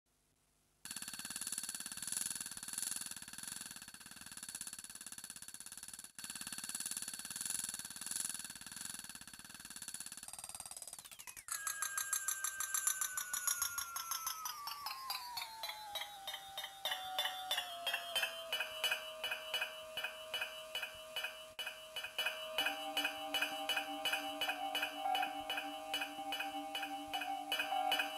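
Electronic music from a Korg Volca Sample: after a second of silence, a high, rapidly repeating sampled tone sounds in a cluster of steady pitches, broken off briefly about six seconds in. About eleven seconds in, a fast-pulsing stack of tones slides down in pitch over several seconds, then settles into steady, rapidly repeating notes, with a lower note joining near the end.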